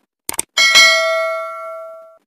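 Mouse-click sound effect, a quick double click, then a bell ding that rings out and fades over about a second and a half: the stock sounds of an animated subscribe button and notification bell.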